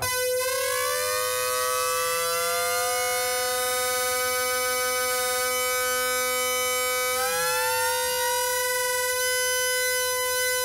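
Moog Rogue analog synthesizer holding one note on both oscillators while the second oscillator's pitch is turned slowly upward, its tone sliding against the steady first one. About seven seconds in it glides up to settle an octave above, and the two then sound together steadily.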